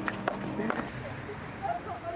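People's voices calling out over a scatter of sharp clicks and knocks. About halfway through, the sound changes abruptly to fainter, more distant voices.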